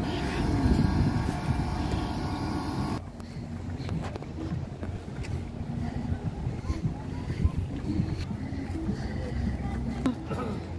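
Outdoor crowd noise with voices and a steady hum. About three seconds in it cuts abruptly to a quieter low rumble, like wind on the microphone, with faint distant voices.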